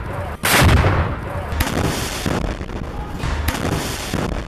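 Combat firing: a heavy boom about half a second in, then rumbling, with sharp single shots about a second and a half in and again near the end.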